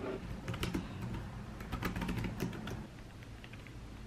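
Typing on a compact low-profile wireless keyboard: a short run of irregular key clicks for the first two to three seconds, then it goes quiet.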